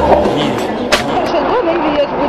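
A broom scraping over street asphalt as a street sweeper sweeps, with one sharp knock about a second in. A song's beat cuts off just after the start, and a voice comes in near the end.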